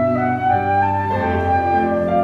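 Flute playing a slow melody of held notes, stepping upward and then dropping about a second in, accompanied by piano.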